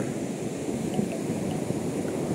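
Surf breaking and washing up a sandy beach: a steady rush of waves.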